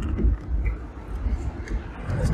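Low, uneven rumble inside a car cabin while driving along a wet road: engine and tyre noise.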